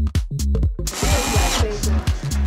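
Electronic dance music with a steady beat and heavy bass. About a second in, a short hissing, whirring burst of under a second sits over the beat.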